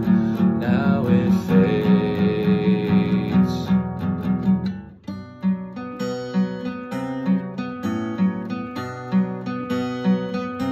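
Steel-string acoustic guitar strummed in chords, with a man's voice holding a long sung note over the first few seconds. The playing breaks off briefly just before the middle, then the guitar carries on alone in an even strummed rhythm.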